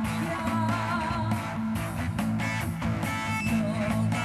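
Live rock band playing: a woman singing over electric guitars, bass guitar and drums.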